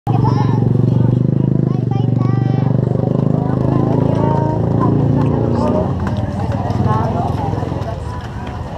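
Motorcycle tricycle's small engine running close by, a steady low drone that fades after about five and a half seconds, with people talking around it.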